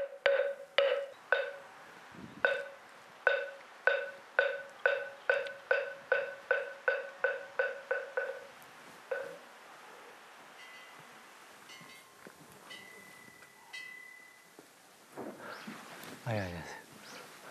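A wooden moktak, the Buddhist temple wood block, struck in a run of hollow pitched knocks that speed up and then stop about nine seconds in. A few faint high tones follow.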